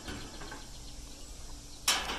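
Handling noise from fingers working an earbud cable and phone: faint rustling and scraping over a quiet outdoor background, with a sharper brush of noise near the end.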